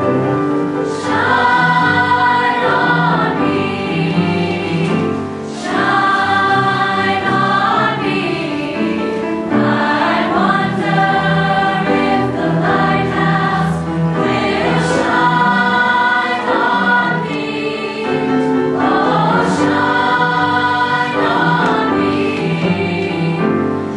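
Mixed youth choir singing a choral piece in phrases a few seconds long.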